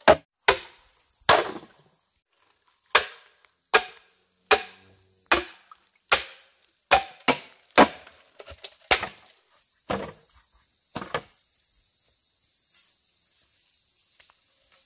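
A length of bamboo used as a club knocks a blade down into a standing bamboo pole to split it. There are about fifteen sharp strikes at uneven intervals, which stop about eleven seconds in. Insects drone steadily and high-pitched throughout.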